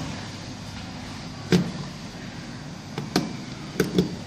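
Plastic magnetic contactors and a screwdriver being handled on a bench: a sharp knock about one and a half seconds in, then three or four quick clicks near the end, over a steady background hum.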